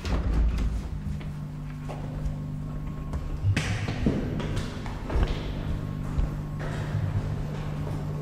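A door opened and walked through, with a low bump at the start and several thuds from steps and handling about three and a half to five seconds in, over a steady low hum of brewery equipment.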